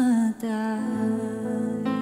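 A woman singing a slow Romanian ballad into a microphone, with soft instrumental accompaniment. A long held note wavers and breaks off about a third of a second in, and after a quick breath she holds another long steady note.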